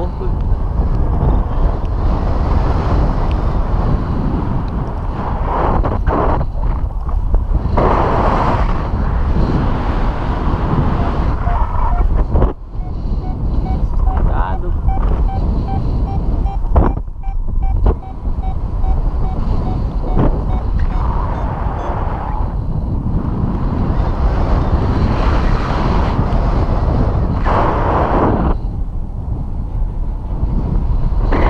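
Wind buffeting the microphone of a camera on a paraglider pilot in flight: a loud, steady rushing, with gusts swelling every few seconds. A faint string of short, evenly spaced beeps runs for a few seconds in the middle.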